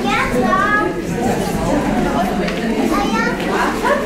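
Hubbub of many young children's and adults' voices chattering at once, with a couple of higher-pitched child voices calling out.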